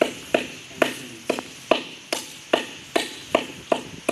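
Hand clapping from one or a few people, a steady beat of about two to three sharp claps a second, with a little echo after each clap.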